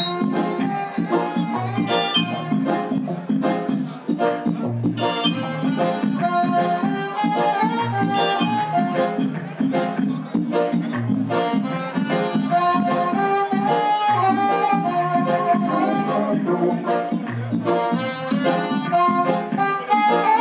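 Live reggae band: a saxophone plays the lead melody over electric guitar, bass guitar and drums, with a deep bass note recurring about every three seconds.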